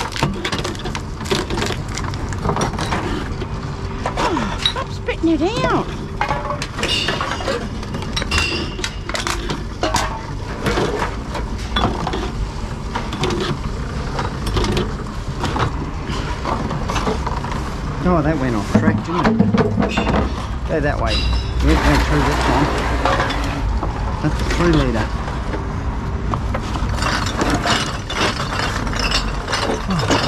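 Empty glass bottles, plastic bottles and cans being fed one after another into reverse vending machines: repeated clinks and clunks of containers against the intake and against each other in the crates, over the running of the machines, with a low rumble swelling about two-thirds of the way through.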